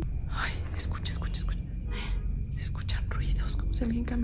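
Hushed whispering voices, breathy and without clear pitch, with a few short clicks, over a steady low hum.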